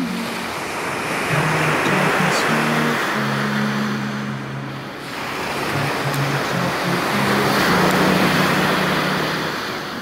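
Sea waves washing onto the shore, swelling twice and easing back, with low held notes of background music underneath.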